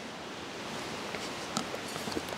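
Steady outdoor background hiss of a wooded lakeshore, with a few faint light clicks and rustles about halfway through.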